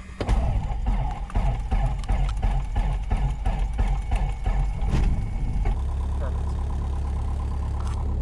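Piper Archer's four-cylinder aircraft engine starting: an uneven, pulsing run for the first few seconds, then settling into a steady idle about six seconds in.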